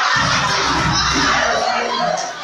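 A crowd of young people shouting and cheering together, rising just before and staying loud throughout.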